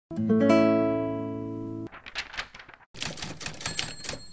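Intro sound effects: a ringing musical chord, struck twice in quick succession, that cuts off abruptly at about two seconds, followed by a rapid typewriter key clatter as title text types out, with a brief high ding near the end.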